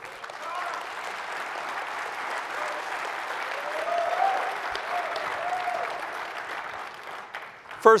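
Audience applauding, building to its loudest in the middle and dying away near the end.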